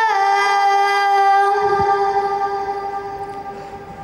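A boy reciting the Quran into a microphone, drawing out one long, steady vowel that slowly fades toward the end.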